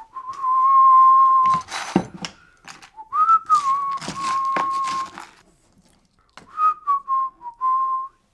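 A man whistling a few long, steady notes of about the same pitch in three phrases, the middle one sliding up briefly before settling. Sharp clicks and knocks of small pieces being handled on the table come between and under the notes.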